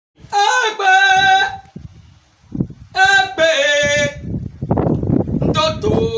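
A voice chanting two long held notes, each a little over a second long, about three seconds apart; the second steps down in pitch partway through. Rougher, noisier vocal sounds follow near the end.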